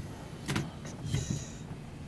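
Quiet room noise with one sharp click about half a second in, then a short high scraping sound a little after a second.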